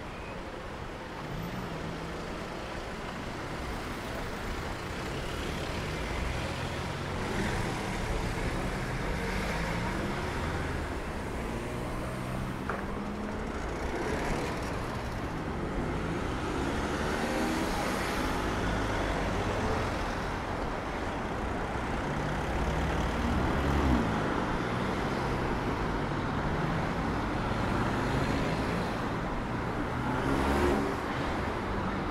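Road traffic on a city street: cars driving past, engine sound and tyre noise, growing louder over the first few seconds.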